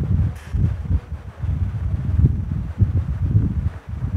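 Wind noise on the microphone: a low, irregular, gusting rumble with no clear pitch or rhythm.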